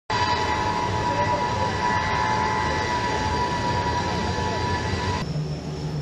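Jet engines of a four-engine Ilyushin Il-76 transport running on the ground: steady engine noise with a high, even whine. About five seconds in it cuts off abruptly to a quieter, lower hum.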